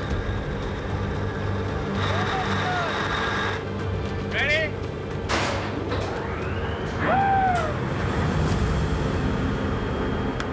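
Steady drone of a crab boat's engine-room machinery, with background music over it that adds a few short rising-and-falling tones and a brief swish.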